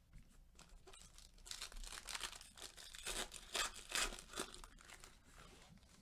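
A trading-card pack's wrapper being torn open and crinkled: a run of crackling tears that is loudest between about three and four and a half seconds in.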